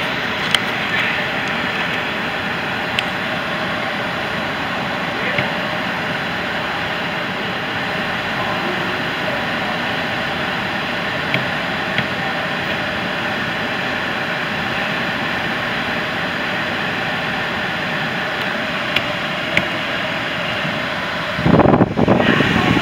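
Steady in-cabin hum of a 2014 Chevrolet Cruze's 1.4-litre turbocharged four-cylinder idling, with a few faint clicks.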